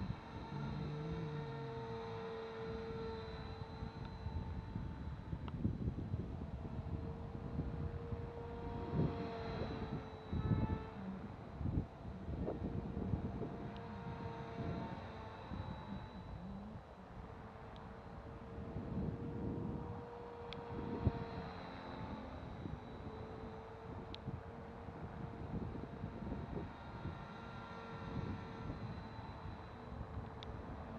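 450-size electric RC helicopter in flight: a steady whine from the motor and rotors that dips and recovers slightly in pitch a few times as it manoeuvres. Gusty wind noise on the microphone runs underneath.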